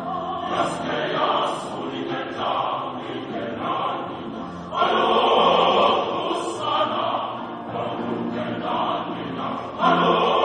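Large choir singing in parts under a conductor, and suddenly growing much louder and fuller a little before five seconds in.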